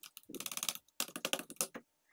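Rapid typing on a laptop keyboard, two quick runs of key clicks with a short break about a second in.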